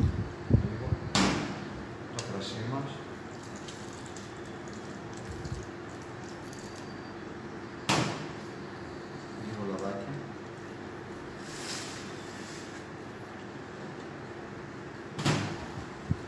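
Sharp knocks and clatters of containers being handled on a kitchen counter: a cluster about a second in, then single knocks near the middle and near the end, over a steady low hum.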